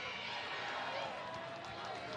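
Match ambience of an outdoor soccer game: a steady background hum of the stadium with faint distant voices from the field and stands.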